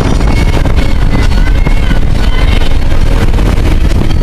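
A 2000 Toyota Solara driven hard at speed, heard from inside the cabin: loud, steady engine and road noise with brief high-pitched squeals on top.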